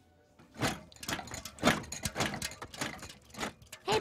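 Metal cans clattering and knocking together in a quick, irregular run of clinks, starting about half a second in: cartoon sound of oil cans stuffed under a sweater.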